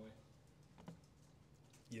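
Near silence: room tone, with a single faint click a little under a second in.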